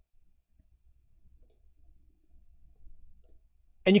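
Quiet room tone with two faint, short clicks about one and a half and three and a quarter seconds in; a voice starts speaking just before the end.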